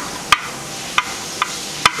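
Sharp metal clicks, four in two seconds at uneven spacing, as a balance shaft with its drive gear is worked out of its bore in an EA888 engine block by hand.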